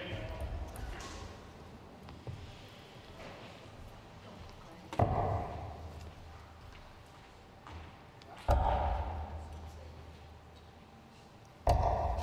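Three darts thudding into a Winmau Blade 5 bristle dartboard, about three and a half seconds apart, each impact with a short echo in a large hall.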